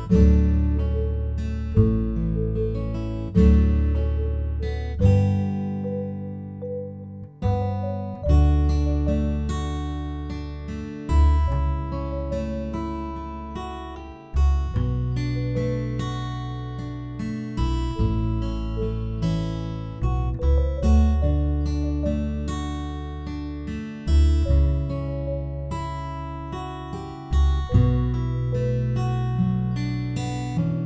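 Background music of acoustic guitar: plucked chords that ring and fade, with a new chord every second or two.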